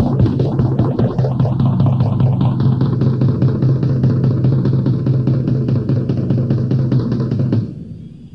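Live rock music: fast, rapid-fire drumming over a sustained low note, cutting off abruptly near the end.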